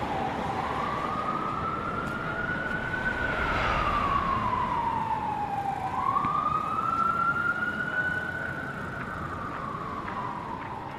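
Emergency vehicle siren wailing, its pitch slowly rising and falling in long sweeps of about three seconds each, over low street noise.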